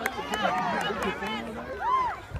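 Several voices at once, calling out and chattering, with no single voice clear; one higher call rises and falls near the end.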